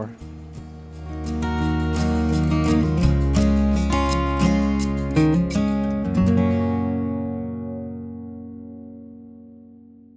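Background guitar music: strummed chords come in about a second in, then a last chord rings on and fades away over the final few seconds.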